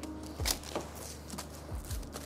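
Soapy cloth rag wiping the foil-lined inside of an opened crisp packet to clean the grease off, with a few short, soft rubbing strokes.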